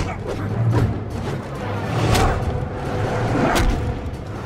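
Dramatic film score under a fight scene, broken by two sudden sound-effect hits, about two seconds in and again near the end.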